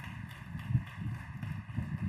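Irregular low rumble and thumps on the lectern microphone, with one sharper knock about three-quarters of a second in.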